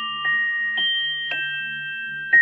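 Musical pocket watch chime playing a slow melody: three bell-like notes about half a second apart, each ringing on under the next, over a low steady drone.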